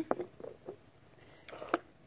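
Faint clicks and taps of a glass mason jar and a plastic straw being handled, followed near the end by a short breath and a click.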